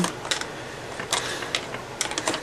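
A few sharp clicks and taps of lids being fitted back onto small pots of metallic paste, with light handling noise.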